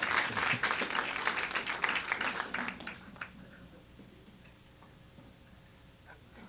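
Audience applauding, a dense patter of clapping that dies away about three seconds in, leaving quiet room tone.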